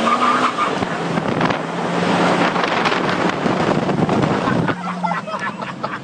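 A car accelerating away with its engine running under loud rushing wind and road noise buffeting the microphone.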